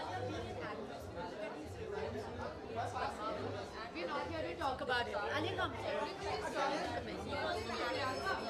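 Indistinct chatter of several people talking at once, with no one voice standing out.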